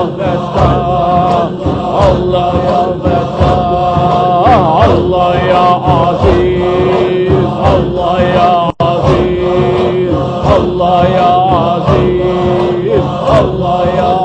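Sufi zikr chant: male voices repeating the names of Allah to a steady beat of about two strokes a second, while a lead voice sings long, wavering held notes. The sound drops out for a moment about two-thirds of the way through.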